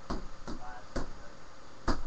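Four blows landing on a free-standing punching bag at an uneven pace, each a short thud, the last and loudest near the end.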